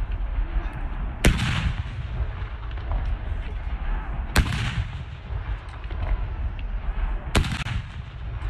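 Ceremonial gun salute from a battery of field guns: three rounds fired about three seconds apart, each a sharp report with a short echo, over a constant low rumble.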